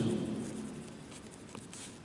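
Pen writing on paper: faint scratching of the pen tip as a word is written by hand, with a few light ticks about a second and a half in.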